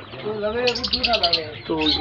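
Caged lovebirds chattering, with a rapid run of sharp, high chirps about a second in.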